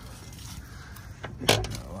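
Quiet background, then about one and a half seconds in a single sharp metallic click with a few lighter ticks right after it, from handling the door of a 1962 Rambler American.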